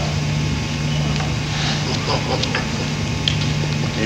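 A steady low hum with faint room noise during a pause in talking, broken by a few small ticks.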